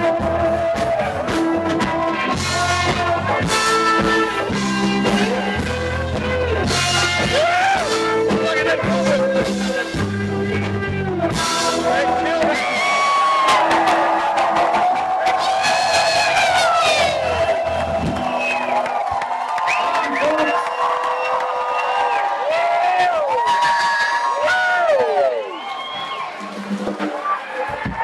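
Loud live dance music over a PA, with a pulsing bass line that drops out about two-thirds of the way through, leaving voices from the crowd singing and whooping over the thinner music.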